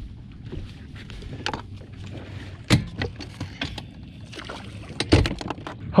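Scattered knocks and thumps of footsteps and handled gear on a bass boat's deck, the heaviest about a third of the way in and near the end, over a low steady hiss of wind and water.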